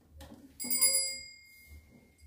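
A small altar bell struck once, ringing with several high, clear tones that fade away over about a second, rung to mark the consecration of the host. A short knock comes just before it.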